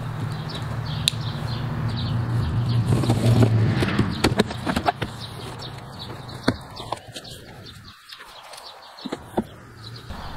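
Cardboard shipping box being opened by hand: flaps pulled back and handled, with scattered sharp clicks and rustles. A steady low hum underlies the first few seconds.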